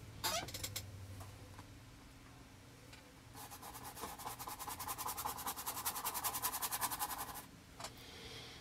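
Paintbrush scrubbed rapidly back and forth on canvas, a quick scratchy rhythm of about ten strokes a second that starts about three seconds in and lasts about four seconds. A few faint taps come just before it.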